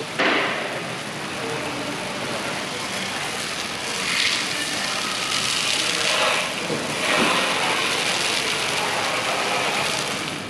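Water jet from a garden hose spray nozzle hitting the steel lid of an electric car's removed battery pack: a steady spraying hiss that grows louder a few times as the jet moves over the casing.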